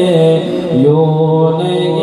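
A man's voice chanting devotional verse, holding long notes that slide between pitches and settling on a long low note about a second in.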